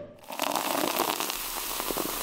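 Champagne fizzing and spraying out of the neck of an uncorked bottle: a steady hiss with fine crackles running through it.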